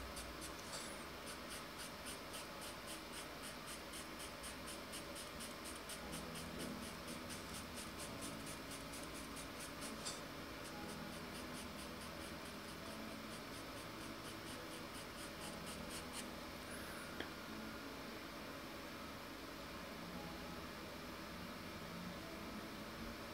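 Pastel pencil scratching faintly on Pastelmat paper in a rapid run of short strokes, thinning out for the last few seconds.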